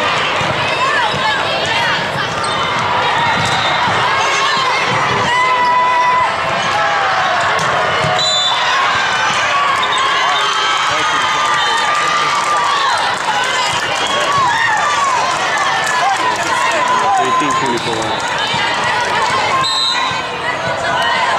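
Live sound of an indoor volleyball match: the ball being struck and bouncing, with many players and spectators calling out and chattering throughout.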